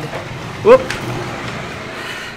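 A man's short rising "woop!" of excitement, followed at once by a sharp click, over a steady background hiss.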